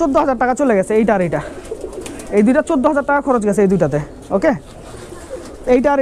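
A man speaking, with domestic pigeons cooing from nearby lofts in the background.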